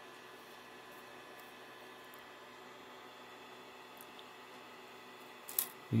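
Quiet room tone: a faint steady hum, broken near the end by a short, sharp click.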